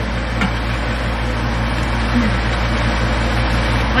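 Kitchen range hood fan running steadily on its highest setting, with burger patties sizzling in a frying pan beneath it.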